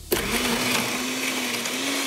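Countertop blender switched on, starting abruptly and running at full speed, churning a jar of ice, banana and coffee into an iced blended drink. A steady motor hum with a slight waver sits under the loud whir of the blending.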